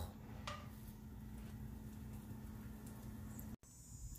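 Faint room tone with a low steady hum and one brief faint sound about half a second in. The sound cuts out abruptly near the end.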